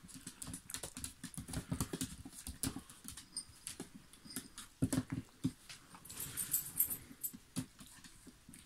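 Puppies' claws clicking and pattering on a hard tile floor, in quick irregular ticks.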